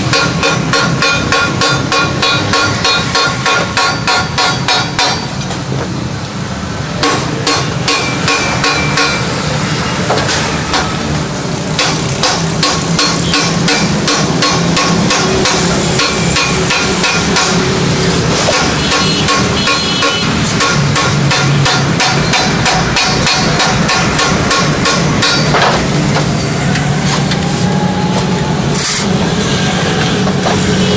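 Wooden mallet repeatedly striking stainless steel sheet as it is folded over a steel angle edge: rapid, even taps with a light metallic ring.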